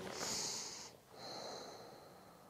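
A woman breathing twice through a close clip-on microphone, two soft airy breaths with a short pause between, the first louder than the second.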